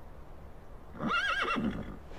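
A horse whinnying once, a short neigh with a quavering pitch about a second in.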